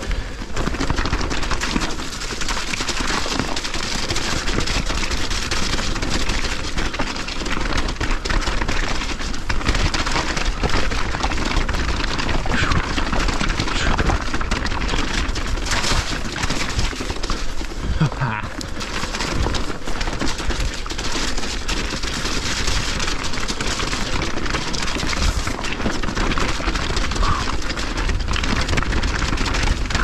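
Mountain bike riding down a rocky trail of loose stones: tyres clattering over the rocks and the bike rattling, with many small knocks over a steady low rumble.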